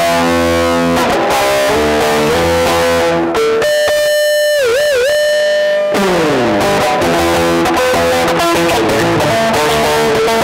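Stratocaster-style electric guitar played through an amplifier: picked chords and riffs, then a long held note a few seconds in that wavers down in pitch twice, followed by a slide downward and more riffing.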